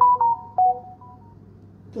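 A click, then a quick run of short electronic beeps at three or four different pitches over about a second, of the kind a phone plays.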